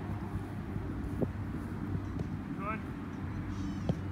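A soccer ball being kicked on grass, two sharp thuds: one about a second in and a louder one near the end. Under them runs a steady low motor hum, and a short shout of "Good".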